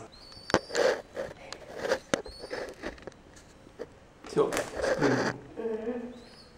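A young bird splashing and fluttering its wet wings on the edge of a plastic bath basin: short rustling flurries and a couple of sharp clicks. A person's voice comes in near the end.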